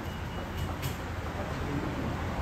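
Steady street noise with a low rumble of road traffic, two faint clinks around the middle and faint voices near the end.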